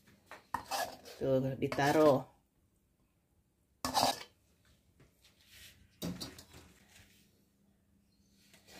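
A metal spatula scraping and clattering against a metal wok as noodles are pushed out onto a plate, in a few short bursts, the loudest about four seconds in. A voice briefly chants a short phrase about a second in.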